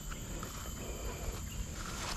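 Outdoor ambience: a steady, high-pitched insect chorus over a low, rumbling noise on the microphone.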